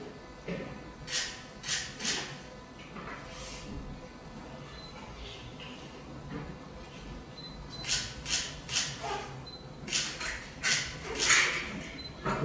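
Long hair rustling as it is handled and run through the hands: a run of brief, soft swishes that come in clusters, with the busiest stretch near the end.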